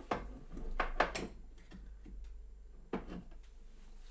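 Handling knocks as a small portable radio in its quick-release antenna bracket is tilted up on a shelf: a knock at the start, two more about a second in and another about three seconds in, with faint rustling between.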